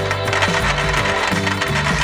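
Dozens of small balls spilling out of a tipped glass jar and clattering onto a clear plastic tray, over background music.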